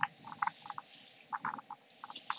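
Frogs calling: a run of short croaks at an irregular pace, a few each second.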